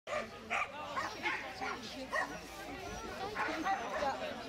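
Dogs barking, about half a dozen sharp barks spread over a few seconds, over people chatting.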